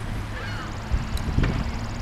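A faint bird call over a steady low rumble, followed by a faint, fast, high-pitched trill.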